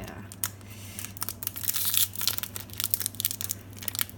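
Foil booster-pack wrapper crinkling and crackling in irregular bursts as both hands grip and pull at its top edge to tear it open, densest about two seconds in, over a low steady hum.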